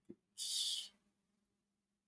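A short breathy hiss lasting about half a second, near the start: a person breathing out or sniffing close to the microphone.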